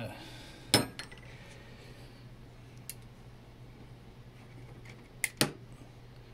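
Metal-on-metal clacks of a steel maglock armature plate being handled against the magnet body: one sharp clack about a second in, a faint tick later, and two quick clicks close together near the end, over a low steady hum.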